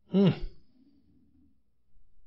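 A man's short, hummed "hmm", falling in pitch, then a pause.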